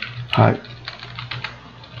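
Typing on a computer keyboard: a run of quick, light keystrokes.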